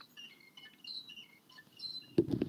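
Faint bird chirps: short, scattered high notes that hop up and down in pitch, coming through an open microphone on a video call.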